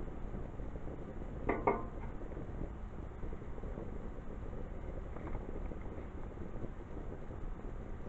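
Steady low rushing noise from the tall flame of burning candle wax blazing out of the jack-o-lantern after water was poured on it, mixed with wind on the microphone. A short vocal sound about a second and a half in.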